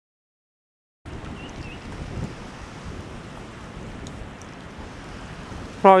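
Silence for about a second, then steady wind noise on the microphone mixed with the wash of choppy lake water.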